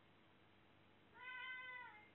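A ginger domestic cat gives one drawn-out meow starting about a second in, lasting under a second and dipping in pitch at its end.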